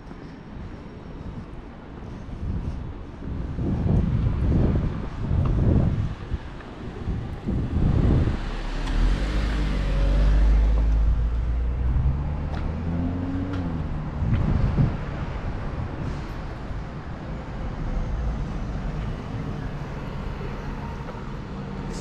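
City street traffic at an intersection. A vehicle passes about nine seconds in with a rush of tyre and engine noise. Then an engine note rises and falls in pitch as a van pulls up the street, over low rumbling gusts and steady traffic noise.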